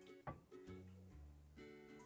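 Faint background music: a plucked string instrument playing soft, sustained notes that change pitch every half second or so.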